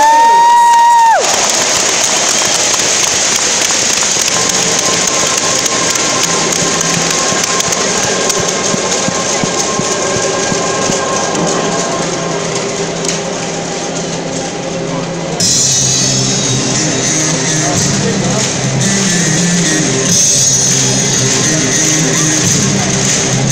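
Music over a football stadium's PA system amid crowd noise. It opens with a loud held horn-like tone that rises into a steady pitch for about a second, and grows louder and brighter about fifteen seconds in.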